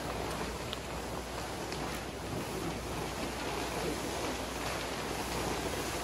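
A large vinyl color guard floor tarp being dragged and spread across a gym floor: a continuous crunchy rustle and swish of the stiff sheet sliding over the wood.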